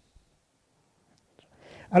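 Near silence for about a second and a half, broken by a faint click, then a soft breathy sound as a man starts to speak near the end.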